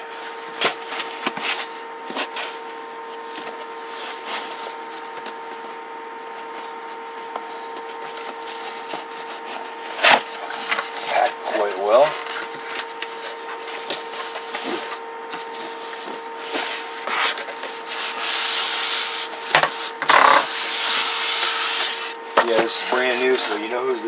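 A cardboard radio box is opened and its styrofoam packing is slid out and handled, giving rubbing, scraping and scattered knocks. The rubbing is densest in a stretch about three-quarters of the way through, over a steady low hum.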